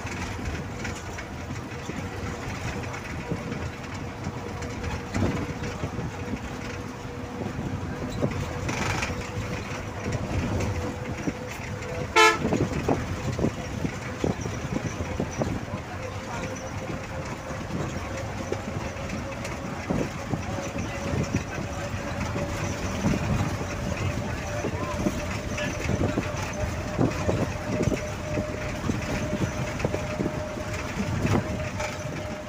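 Steady travel noise heard from inside a moving road vehicle: road and engine rumble with a constant hum that rises slightly in pitch in the second half. There is one sharp knock about twelve seconds in.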